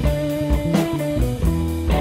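Electric blues band playing between sung lines, with electric guitar to the fore over bass guitar and drums.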